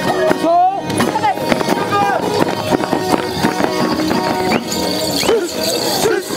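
Charango strummed for Tinku dancing, with voices singing and shouting over it and the dancers' feet stamping in time.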